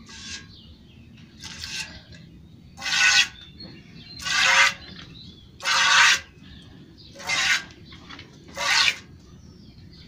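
Milk squirting from a cow's teat into a pail as it is hand-milked with one hand: seven hissing jets at an even pace, about one every second and a half.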